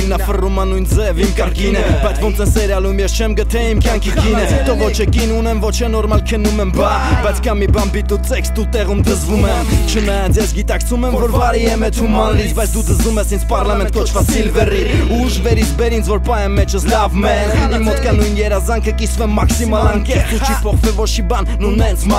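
Hip-hop track: a voice rapping in Armenian over a beat with a steady deep bass line.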